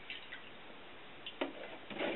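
A few light ticks and clicks from a plastic milk jug being handled as milk is poured into a glass bowl, over a steady hiss; the clicks grow louder about one and a half seconds in.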